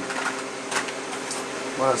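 Steady low hum of room background noise, with a few faint clicks.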